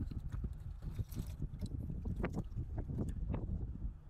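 Cooked shellfish in spicy sauce pulled and torn apart by hand: irregular wet clicks and cracks of shell. A steady low wind rumble on the microphone runs underneath.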